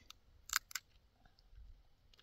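A thin plastic bag crinkling in two short, sharp crackles in quick succession about half a second in, as hands handle it.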